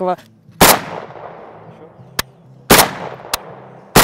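Kalashnikov rifle fired in single shots: three loud cracks, about a second in, near three seconds and at the very end, each followed by a ringing echo that dies away. Two fainter, sharp cracks fall between them.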